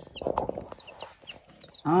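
Baby chicks peeping in a brooder: several short, high peeps scattered through the moment.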